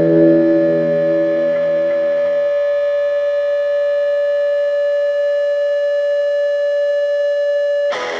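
Distorted electric guitar feedback: one high note held steady with many overtones while the chord beneath it fades away over the first two or three seconds, ending a punk rock song.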